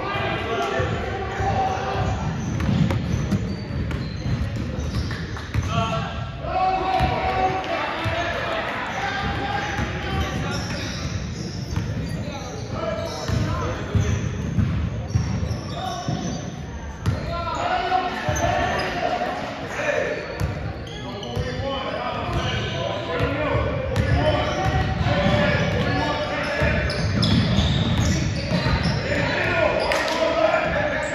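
Basketball bouncing on a hardwood gym floor during a game, with voices of players and spectators calling out and echoing in the large gym.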